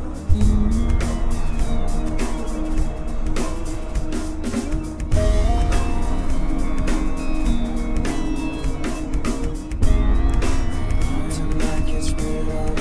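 Instrumental passage of a rock song with no vocals: electric guitar over bass and a steady drum beat, growing louder about five and again about ten seconds in.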